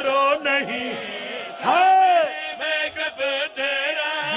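A man chanting devotional verse in a melodic recitation style, with one long loud held note about halfway through that swells and falls away.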